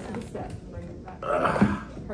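A man's short grunt of effort about one and a half seconds in, as he steps up onto a step box.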